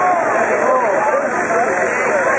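Crowd of spectators at a fireworks display, many voices talking and calling out at once and overlapping; no firework bang stands out.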